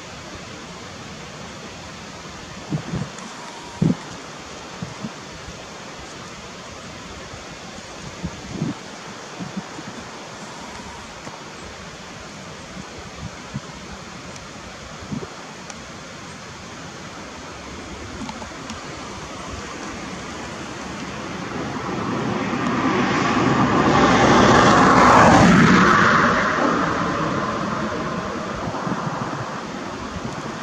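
A motor vehicle passing on the road: steady background hiss with a few faint knocks, then the vehicle's engine and tyre noise grow louder over several seconds, peak about three quarters of the way through and fade away.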